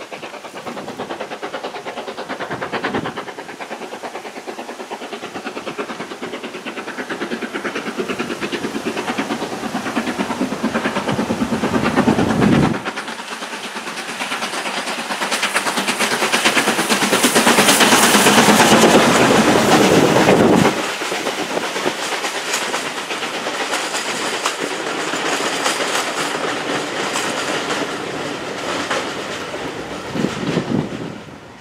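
LMS Stanier Class 5 ('Black 5') 4-6-0 steam locomotive 45379 approaching and passing close beneath with a train. The sound builds to its loudest about two-thirds of the way through and drops off suddenly. The carriages then roll by with a clickety-clack of wheels over rail joints.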